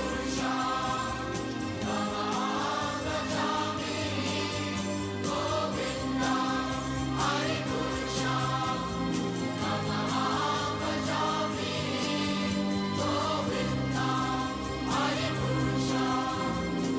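Devotional Hindu singing over a steady held drone, the melody moving in long phrases, with sharp percussive strikes recurring every second or two.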